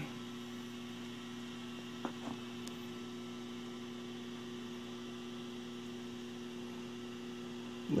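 Steady low electrical mains hum, a few even tones held without change, with one faint click about two seconds in.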